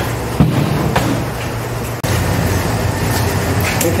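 Steady low hum of shop ventilation running, with a single knock about half a second in.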